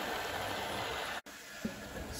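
ILIFE V5s Pro robot vacuum running, a steady motor-and-brush noise. It cuts out abruptly just over a second in and comes back quieter.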